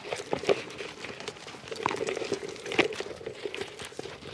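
A horse walking on sand: irregular soft hoof thuds and crunches, mixed with rubbing and knocks from a handheld camera jostled by the ride.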